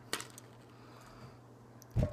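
A sharp click of a hand on the plastic Bean Boozled spinner on the tabletop, then quiet room tone with a couple of faint ticks and a thud at the very end.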